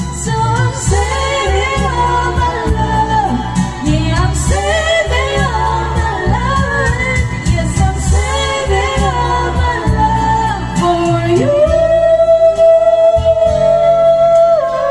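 Karaoke: people singing into handheld microphones over a pop backing track with a steady bass beat, ending with one long held note over the last few seconds.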